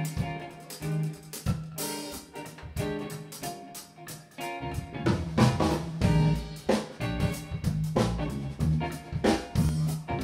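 Live instrumental funk from a band of electric guitar, bass guitar, drum kit and keyboard. The first half is sparser, with guitar notes to the fore, and the bass and drums fill in louder and fuller about halfway through.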